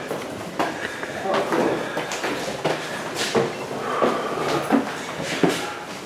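Irregular footsteps and small knocks on a gritty concrete floor as someone walks with the camera, with indistinct talk in the background.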